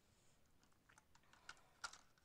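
Faint scattered light clicks and taps, with a sharper click near the end, over near silence.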